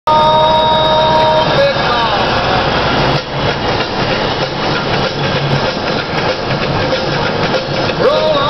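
Peterbilt truck under way, heard from inside the cab: a steady engine and road noise rumble. A few held tones and a falling glide sit over it in the first two seconds.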